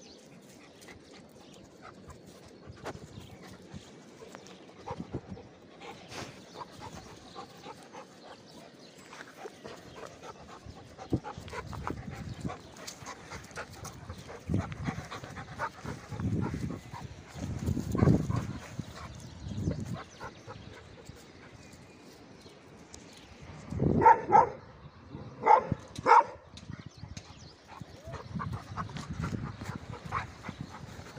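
Dogs barking, a cluster of three or four short barks about four-fifths of the way through and one more near the end. Before them come low, muffled bumps and rustling close to the microphone.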